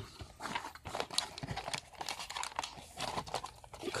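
Cardboard box flaps and paper sheets rustling and crinkling as they are handled, with many irregular small clicks and scrapes.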